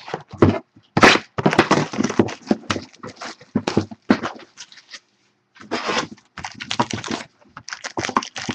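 Packaging of a trading-card box being handled and opened: plastic wrap crackling, with cardboard scraping and knocking, in irregular bursts. There is a short break about five seconds in.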